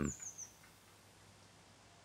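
A songbird gives a brief, high call right at the start: a quick string of notes falling in pitch, about half a second long.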